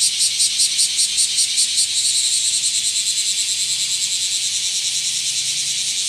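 Loud insect song, high-pitched and pulsing at about five beats a second, which turns into a faster, smoother trill about two seconds in.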